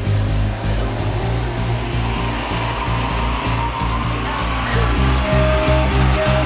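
Background music over a car running on a rolling-road dynamometer: a steady whooshing roar of engine and rollers that rises in pitch from about two seconds in.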